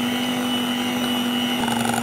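Electric hand mixer running at a steady speed, its twin beaters whisking runny egg-and-oil cake batter in a steel bowl. The tone shifts slightly near the end.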